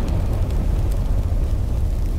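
Sound effect of a fire: a steady low rumble of flames.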